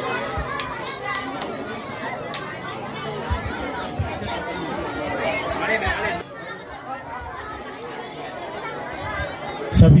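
Overlapping chatter of many voices in a hall, with no music. Near the end a louder voice cuts in, beginning a welcome to everyone.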